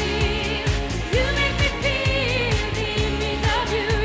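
A woman singing a pop song with band backing and a regular drum beat; her voice wavers in a wide vibrato on held notes.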